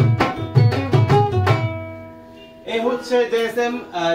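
Ukulele strummed with a hand-played Bengali dhol beating along underneath; the playing stops about a second and a half in and the ukulele chord rings out and fades. A man's voice starts talking near the end.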